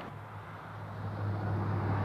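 A motor vehicle's low, steady engine hum with road rush, growing louder as it draws near.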